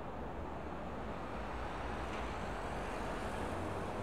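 Steady background ambience: a low, even rumble with a soft hiss, with no distinct events.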